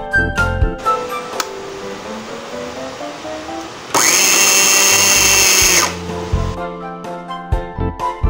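Electric blender of a baby food maker running for about two seconds, starting about four seconds in and cutting off abruptly, as it purees steamed carrot and pear. It makes a steady, loud motor whine.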